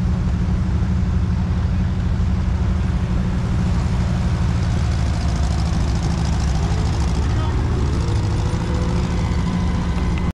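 A threshing outfit at work: a threshing machine belt-driven by a Minneapolis steam traction engine. It gives a loud, steady mechanical rumble.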